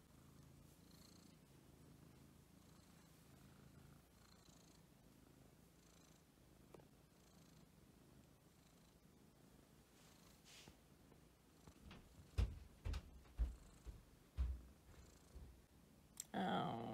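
A domestic cat purring faintly while its head is stroked. Several short, dull thumps come near the end.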